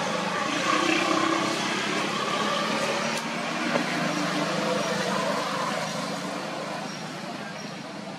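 A motor vehicle's engine running nearby with a steady hum, fading away over the last few seconds as it moves off.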